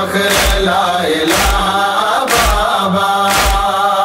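Male chorus chanting a noha, a Shia lament, in sustained wavering voices, over deep percussive beats about once a second.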